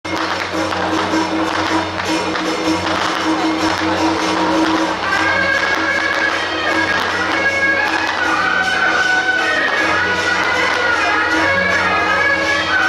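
Traditional temple-procession band music: a shrill, shawm-like reed instrument playing held high notes over a steady drone and a constant run of percussion strokes. The reed melody becomes stronger about five seconds in.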